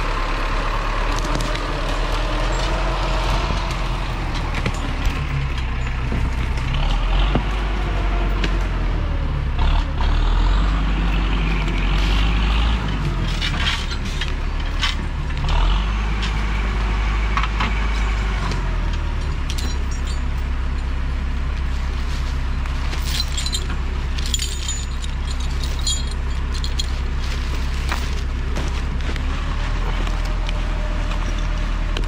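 LKT 81 Turbo skidder's diesel engine running steadily nearby, revving up for a few seconds about a third of the way in. Scattered metallic clinks and knocks come over it in the middle part.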